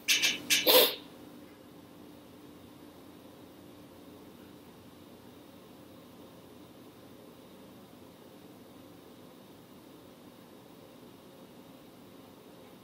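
Three quick handling noises in the first second as a plastic hand mirror is picked up, then only a faint steady room hiss.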